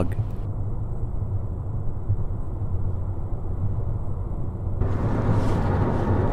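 Steady road noise of a moving car heard from inside the cabin: a low rumble of engine and tyres. About five seconds in it turns brighter and hissier.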